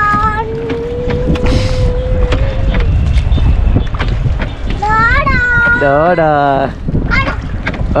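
A voice holding long wordless notes: one steady note held for about two and a half seconds near the start, then a wavering, rising-and-falling phrase about five seconds in, over a steady low rumble.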